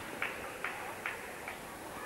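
Faint, evenly spaced clicks, a little over two a second, over a low steady background hiss.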